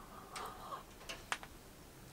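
A quiet sip from a small porcelain espresso cup, then a few faint small clicks, one sharper than the rest, as the cup is handled and set down.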